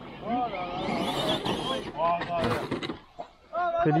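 Men's voices talking and exclaiming, the words not clear, with a short burst of hiss about a second in.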